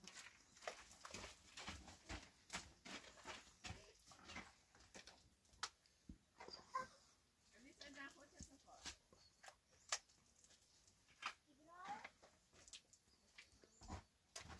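Very quiet, scattered soft clicks and scrapes of a gloved hand daubing and smoothing wet plaster onto a cinder-block wall. Twice, a faint distant call is heard, the second rising in pitch.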